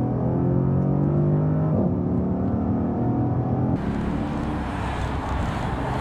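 Mercedes-Benz E63 AMG's V8 accelerating hard: its pitch climbs steadily, breaks at a gear change a little under two seconds in, then climbs again. Near four seconds in it is suddenly heard from outside the car, with tyre and wind noise over the engine as the car drives by.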